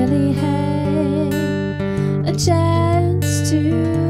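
A woman singing long, wavering held notes over a strummed acoustic guitar.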